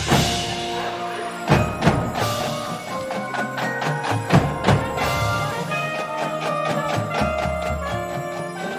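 Drum and bugle corps playing: sustained chords ring under a series of sharp accented drum and cymbal hits. The first crash falls right at the start, then a cluster of hits about one and a half to two and a half seconds in, and more around four and a half to five seconds.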